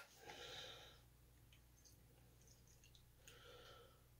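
Near silence: a faint click, then two brief faint hisses, one about half a second in and one near the end, as gasoline is squirted from a fuel bottle into the RC truck's fuel tank.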